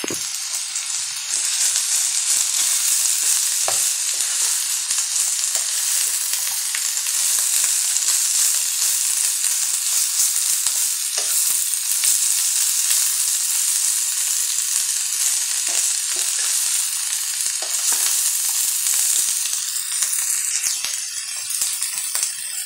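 Carrots and shredded cabbage sizzling steadily in hot oil in a wok, stirred with a spatula that scrapes and clicks against the pan now and then.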